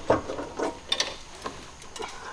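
Irregular small clicks and taps of hand tools and metal fittings while a turbocharger is being unbolted from an LS engine, about five sharp clicks in two seconds.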